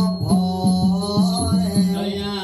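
Southern Thai Nora ritual music: a chanting voice over a steady low drone, with drum strokes about three a second.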